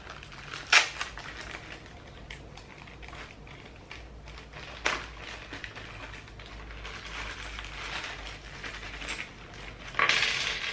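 Small clear plastic bags crinkling and rustling as hands handle and open them, with two sharp clicks, about a second in and near five seconds.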